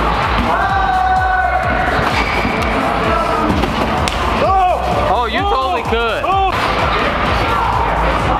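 Background music with a beat, carrying held notes early on and, about halfway through, a quick run of rising-and-falling notes.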